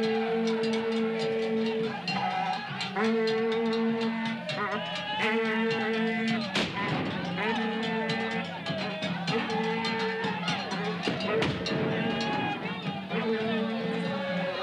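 Group of voices chanting in long held notes of about two seconds each, over rapid drum or percussion beats, with a single sharp bang about six and a half seconds in.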